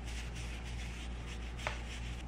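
Bristles of a self-tanner brush scrubbed quickly round and round on a paper towel, a steady run of soft, repeated swishes.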